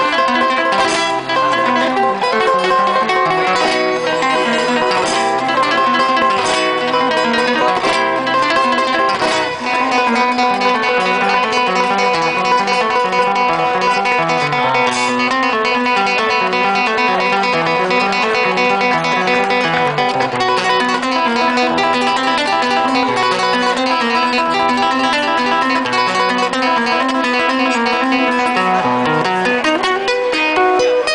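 Live acoustic band music led by a plucked acoustic guitar, with held keyboard notes underneath and hand-drum percussion, playing steadily throughout.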